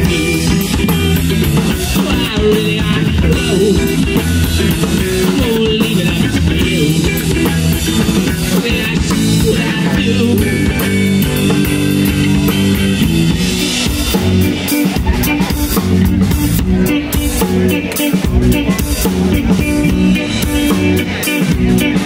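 A rock band playing live and loud, with electric guitar, bass guitar and drum kit. Cymbal and drum hits come thicker in the last several seconds.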